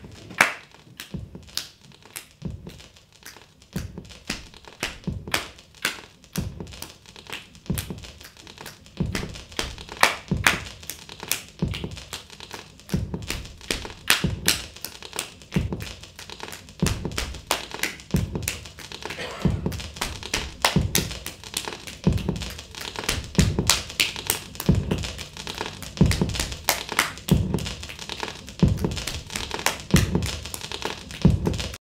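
Percussive music: a low drum beat roughly once a second with sharp clicking taps over it, getting denser and louder after the first several seconds.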